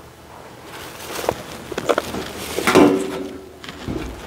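Footsteps and handling knocks as the roof is lifted off a wooden beehive: a few short knocks with a brief scrape, the loudest about three seconds in.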